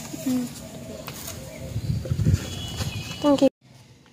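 Outdoor background sound with people's voices and a short spoken word; it cuts off abruptly near the end into a much quieter recording.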